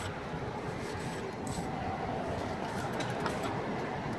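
A few faint, short scrapes of a concave steel striker tooling fresh mortar joints in brick, over a steady low background rumble.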